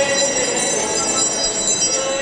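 Bells ringing with music, many held ringing tones sounding together without a break.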